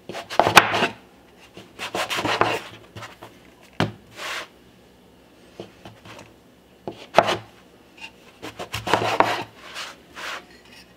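Wooden bench scraper pressing down through sourdough bagel dough and scraping against a floured wooden board, in several short bursts with pauses between and one sharp knock midway.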